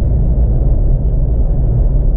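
Steady deep rumble of a car driving, with engine and road noise heard from inside the cabin.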